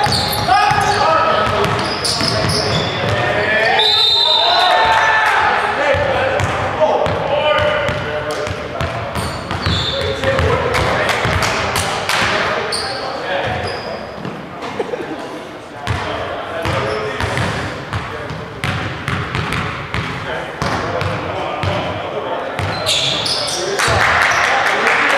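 Basketball being dribbled and bouncing on a hardwood gym floor during play, with players' voices calling out on the court, mostly in the first several seconds, all echoing in a large gym.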